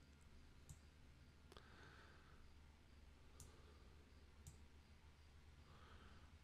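Near silence: room tone with four faint computer mouse clicks spaced a second or two apart.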